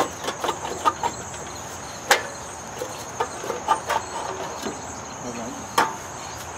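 Sheet-metal blower housing of a Briggs & Stratton 11 HP lawn-tractor engine being lifted off, with scattered knocks and clatter, the loudest about two seconds in and another near the end. Crickets chirp steadily behind.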